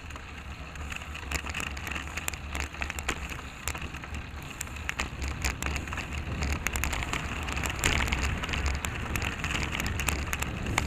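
Wind rushing over the microphone of a bicycle-mounted camera while riding, with steady road noise and frequent small rattling clicks, getting somewhat louder in the second half.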